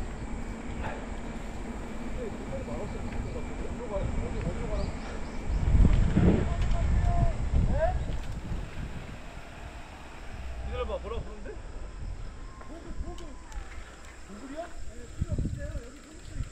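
Wind rushing over the microphone of a camera on a moving road bicycle, a steady low rumble that swells about six seconds in. Faint voices come through here and there.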